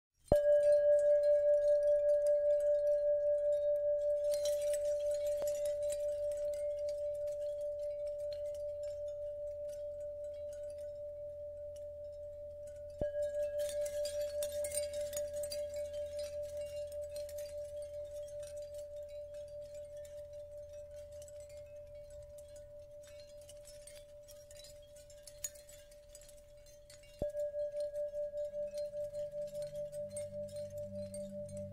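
A singing bowl struck three times: at the start, about halfway, and near the end. Each strike rings on one steady tone that fades slowly with a wavering beat, over a soft low drone, with a faint shimmer after the first two strikes.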